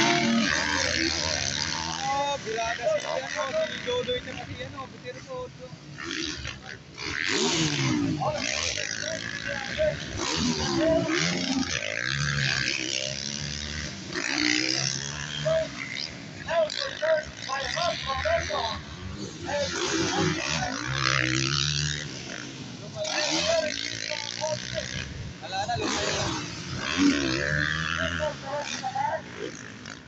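Motocross dirt bikes racing, their engines revving up and dropping back again and again as riders pass, jump and land, with people's voices mixed in.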